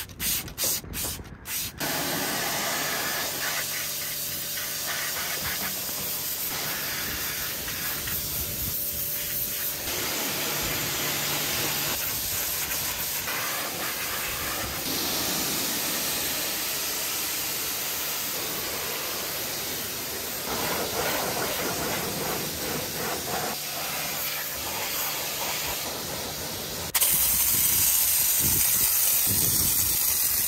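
A few quick squirts of a trigger spray bottle, then a pressure-washer jet hissing steadily as it blasts a car wheel and tyre. Near the end the hiss jumps louder and brighter as a snow foam lance starts foaming the wheel.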